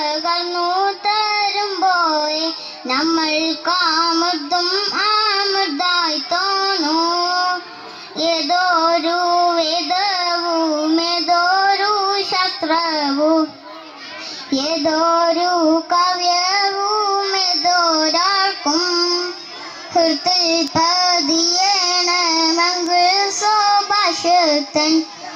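A girl singing a solo song in a high, ornamented melody, her voice amplified through a microphone, with brief pauses between phrases.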